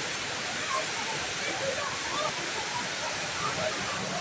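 Steady rushing of the Rain Vortex, a very tall indoor waterfall, pouring down into its pool, with a faint murmur of distant voices over it.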